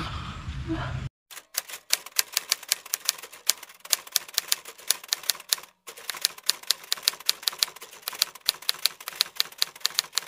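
Typing sound effect: rapid key clicks, several a second, with two short pauses, as text is typed out on screen.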